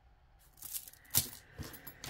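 Plastic beads rattling and clicking against each other as a beaded necklace with a glass pendant is handled and set aside. A sharp click comes a little past a second in, then a smaller one.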